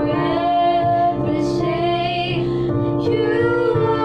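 Two young girls singing a contemporary worship song together into one microphone, over a steady instrumental backing.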